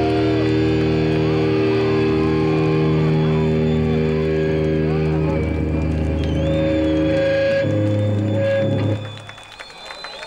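Metal band's amplified guitars and bass holding a long final chord, ringing with feedback, while the crowd cheers and shouts over it. The chord changes once near the end and cuts off abruptly about nine seconds in.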